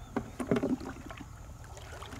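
Pond water sloshing and splashing around a person wading and working by hand in the shallows, in a short burst of a few splashes about half a second in.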